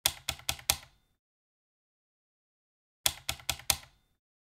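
Two quick runs of four sharp mechanical clacks, about three seconds apart. Within each run the clacks come roughly five a second, each ringing off briefly.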